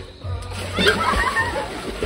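Water splashing in a swimming pool, building to its loudest burst about a second in, with voices calling out over it.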